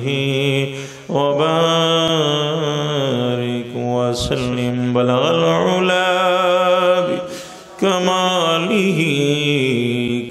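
A man's solo voice chanting an Arabic Islamic invocation through a microphone in a slow, melismatic melody. He holds long notes and bends them, with a breath break about a second in and another near eight seconds.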